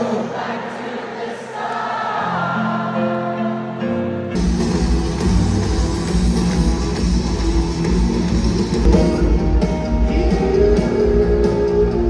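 Live stadium rock concert heard from the stands through a phone microphone: singing over the band. About four seconds in, the sound jumps to a fuller, louder band with drums and heavy bass.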